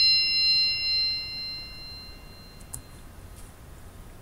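A bell-like 'bing' cue chime ringing out with several clear high tones and fading away over about three seconds: the quiz's signal to pause and write down an answer.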